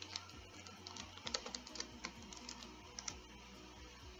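Computer keyboard keys clicking in quick, uneven bursts as a web address is typed and entered.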